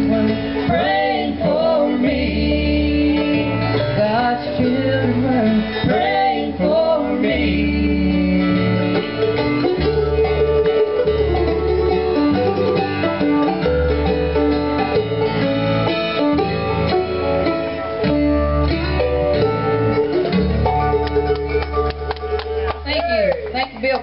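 Live acoustic bluegrass band playing: banjo, acoustic guitar and upright bass with a lead melody over them, the tune winding down near the end.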